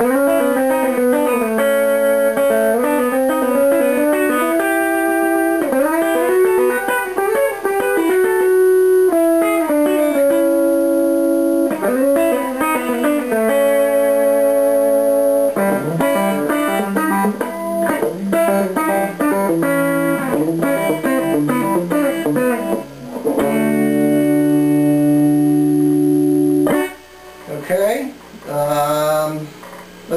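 Telecaster electric guitar played clean, a stream of quick country licks in third intervals ornamented with pull-offs, with a few brief gaps and a short pause a few seconds before the end.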